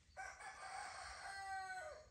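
A rooster crowing once: a single call of nearly two seconds that drops in pitch at the end.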